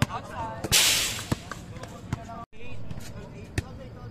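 A volleyball is being hit and bouncing on an outdoor hard court, giving several sharp knocks, with players' shouting voices. A short loud rush of noise comes about a second in, and a brief dropout near the middle.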